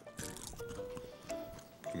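Background music from a TV commercial: a slow line of held notes, with a few small clicks over it.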